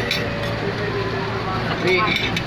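Restaurant room noise: a steady low hum with faint voices talking in the background, and a short click right at the start.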